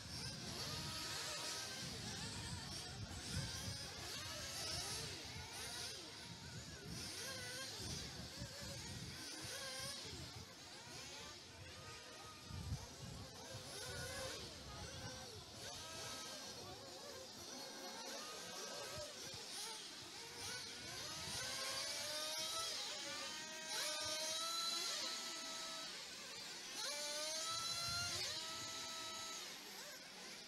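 1/8-scale off-road RC buggies racing, their motors revving up and down in quick, repeated rising and falling whines as they run the track, louder in the second half.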